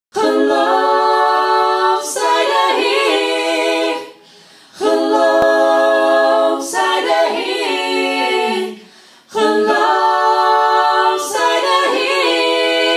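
Three voices singing a Dutch worship song a cappella in harmony. Long held phrases of about four seconds each, with short pauses between them.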